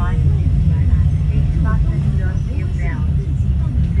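Steady low rumble of a moving bus, engine and road noise heard from inside the cabin, with a voice faintly in the background.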